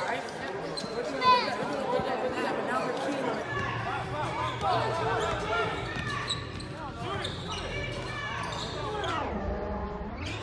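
Basketball dribbled and bouncing on a hardwood gym floor during a game, amid players' and spectators' voices, all echoing in a large hall.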